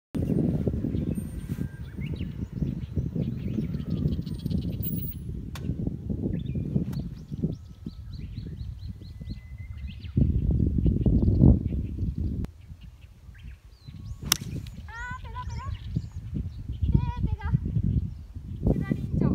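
A golf iron striking the ball off the tee with a single sharp click about 14 seconds in, over a steady low wind rumble on the microphone. Birds chirp repeatedly just after the strike.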